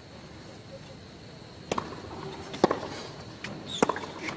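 A tennis ball bounced on a hard court by the server before her serve: a few sharp taps about a second apart over the quiet hush of a stadium crowd.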